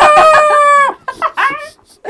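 A man imitating a rooster's crow in a high falsetto: one loud held note of about a second that drops in pitch at its end, followed by a shorter, fainter vocal sound.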